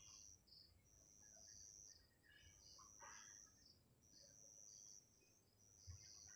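Faint cricket chirping: high-pitched trills repeating every second or so over near-silent room tone, with a soft brief noise about three seconds in.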